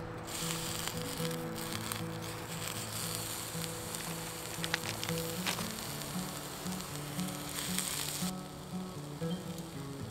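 Sausages sizzling in a hot frying pan on a twig stove, starting just after they are laid in. The sizzle cuts off suddenly near the end.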